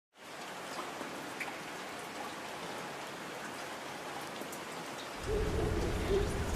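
Steady rain ambience, an even hiss with a few faint drips. About five seconds in, a deep, louder low sound with a held note comes in underneath, the start of the music.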